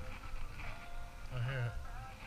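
A short, drawn-out voice sound with a wavering pitch, about a second and a half in.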